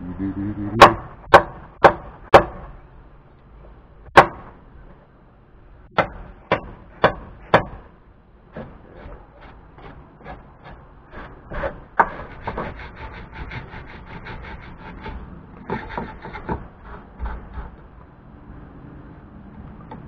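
A hammer driving small protruding nails down into wood: four sharp strikes about half a second apart, a single strike, then four more, followed by a run of lighter, quicker taps.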